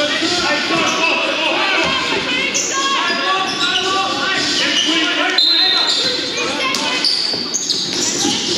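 A basketball game in a gym: the ball dribbling on the hardwood court, sneakers squeaking sharply a few times, and players and spectators calling out indistinctly, all echoing in the hall.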